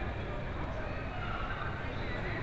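Busy supermarket ambience: a steady hubbub of indistinct shoppers' voices over general store noise.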